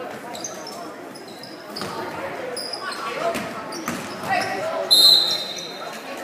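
Basketball shoes squeaking on a hardwood gym floor several times, with a loud, drawn-out squeak about five seconds in. A basketball bounces and people's voices carry over the game.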